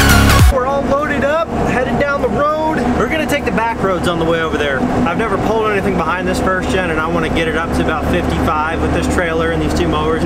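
Electronic dance music cuts off about half a second in. Then a man talks inside the cab of a moving first-generation Dodge Ram, over a steady low drone from the truck's Cummins diesel and the road.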